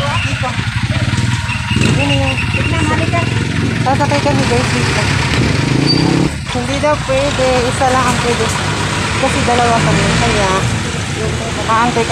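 People talking over street traffic, with a vehicle engine idling steadily.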